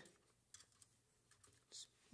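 Faint, scattered light metal clicks as a typewriter type bar is fitted into its slot in the segment of a Smith-Corona Super Speed, with a short hiss near the end.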